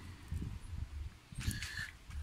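Wind buffeting the microphone in low, uneven gusts, with a short higher-pitched rustle or squeak about one and a half seconds in.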